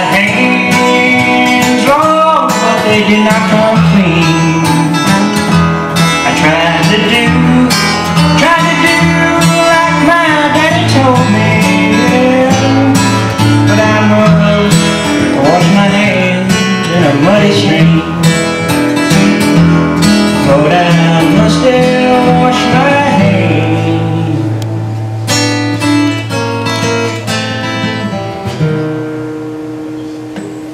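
Guitar instrumental break in a live blues song: picked single notes over low held notes, several bending up and down in pitch. It fades down over the last few seconds.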